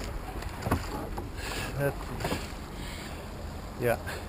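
Oars of a wooden rowing boat pulling against a strong river current: water swishing with the strokes over a steady low rumble, and a sharp knock about a second in.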